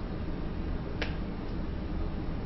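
A single sharp click about a second in, over steady low background noise.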